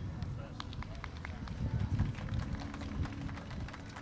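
Outdoor ambience of indistinct voices over an uneven low rumble, with scattered faint clicks.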